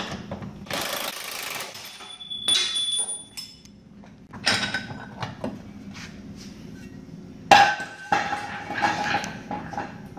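Bursts of metallic clanking and scraping from hand tools working on a Jeep's rear suspension bolts as the lower control arms are taken out. The loudest clank comes about three quarters of the way through and rings on briefly.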